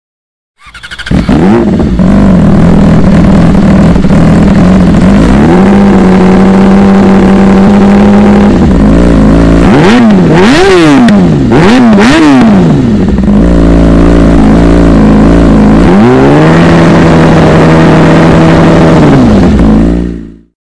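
Yamaha R6 inline-four engine through a Hindle Evo Megaphone exhaust, being revved: it idles, rises to a held higher rev, then gives a quick series of sharp blips. It settles back to idle and is held up at higher revs once more before it cuts off near the end.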